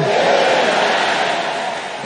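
A very large congregation shouting its response together to a spoken blessing: a dense roar of thousands of voices, loudest at first and slowly dying away.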